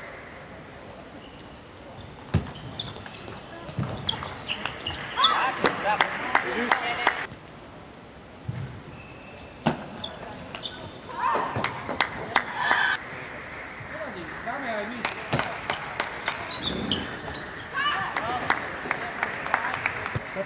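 Table tennis rallies: the ball clicks off bats and table in quick runs of hits, several runs in all. Voices and shouts come between and at the end of the points.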